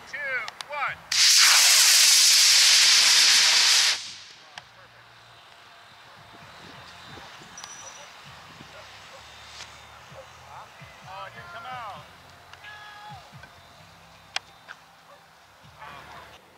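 Model rocket motor firing at liftoff: a loud hiss that starts about a second in, lasts about three seconds and cuts off sharply at burnout.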